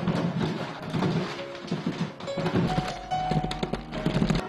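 Background music over the rumbling and repeated wooden thunks of paddles churning a wooden tub full of small sugar-powdered snow jujube pieces, a traditional Dachang snack, while they are being made.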